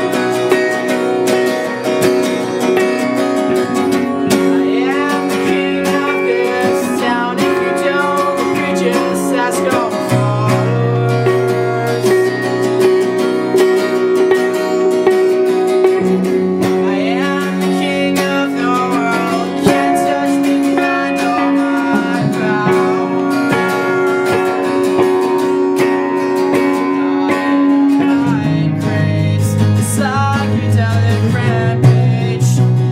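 Acoustic guitar strummed together with an electric guitar playing through an amplifier: a live two-guitar song. Deeper low notes come in a few times.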